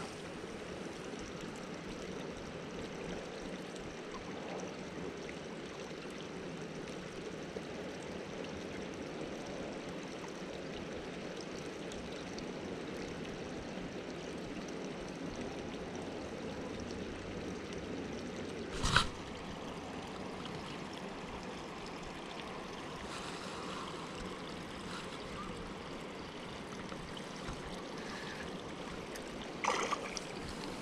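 Steady low rushing background at the lakeside, broken by one sharp click about two-thirds of the way through and a short splash at the very end as the rod is lifted into a fish.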